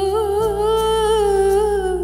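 Film song music: a single voice humming one long held note with a slight waver, over sustained low accompaniment that changes chord about half a second in.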